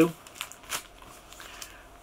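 Clear plastic comic wrapper crinkling as it is handled, with two short rustles about half a second apart early on and faint handling noise after.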